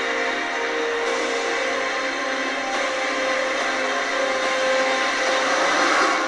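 Movie trailer soundtrack: a dense, sustained swell of score and battle sound effects with several held tones, building to its loudest near the end and then breaking off.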